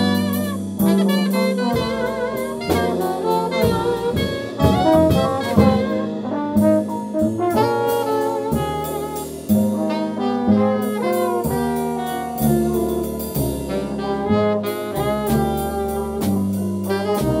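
Small jazz band playing: saxophone and trombone lines over walking upright bass, a drum kit keeping time on the cymbals, and keyboard.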